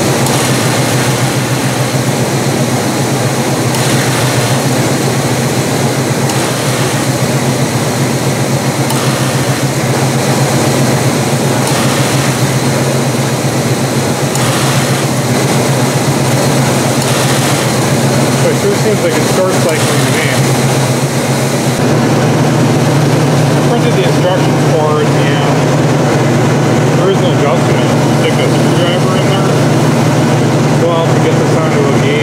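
1973 Pontiac Trans Am V8 idling steadily, heard close under the hood beside the belt-driven AC compressor. About three-quarters of the way through the sound turns deeper and a little louder and stays that way.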